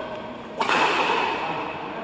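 Badminton rackets striking the shuttlecock during a fast rally. There is a sharp crack about half a second in and another at the very end, each ringing on in a large reverberant hall.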